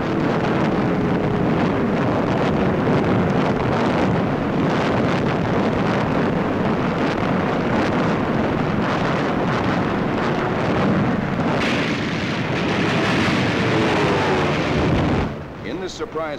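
Shipboard anti-aircraft guns firing without pause, a dense continuous roar of gunfire and bursting shells that falls away sharply about fifteen seconds in.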